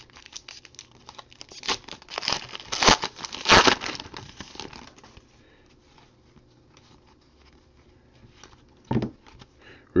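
Foil wrapper of a baseball card pack being torn open and crinkled by hand, loudest twice, about three and three and a half seconds in. After that it is quieter, with faint rustling.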